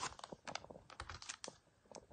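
Clear plastic donut packaging being picked up and handled: a run of irregular light clicks and crackles that die away over the last half second.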